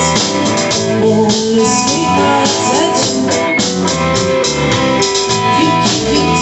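A band playing a rock song live, with drum kit and guitar, steady and loud.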